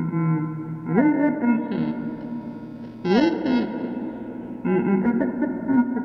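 Music from tape played through the Emona TIMS's PCM encoder and decoder modules. It comes in as separate pitched phrases, starting at the very beginning, about a second in, about three seconds in and near five seconds, with swooping bends in pitch.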